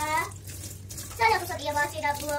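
A young child's high-pitched voice, twice, over a thin stream of tap water running into a stainless-steel sink.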